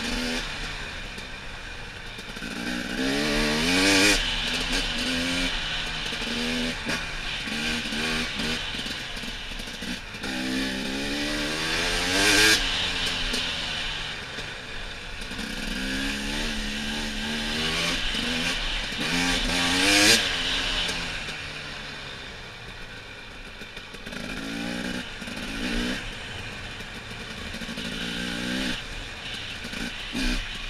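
Dirt bike engine under a rider's throttle, repeatedly revving up and falling back in pitch through the gears. The three hardest pulls come about a sixth, two fifths and two thirds of the way through.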